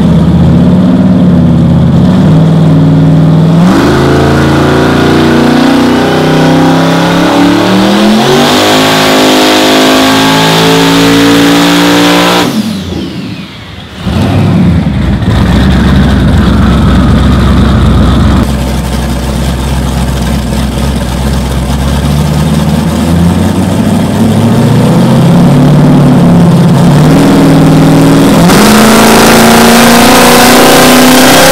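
Twin-turbo 427 cubic inch LS V8 on race pipes, running a full-throttle pull on a chassis dyno: revs climb with a rising turbo whistle, then the throttle shuts about twelve seconds in with a sudden brief drop in level, and the revs climb again through a second pull.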